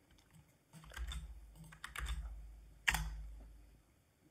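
Computer keyboard keys struck a few separate times, each press a short click with a dull thump, the sharpest about three seconds in.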